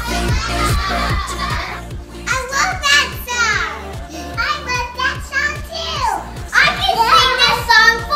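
Upbeat music with a steady beat, and young children shrieking and calling out excitedly over it from about two seconds in.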